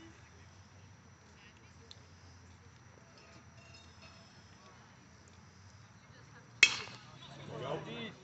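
One sharp crack of a baseball bat hitting a pitched ball about six and a half seconds in, after a stretch of quiet ballpark background. Voices shout from the crowd right after the hit.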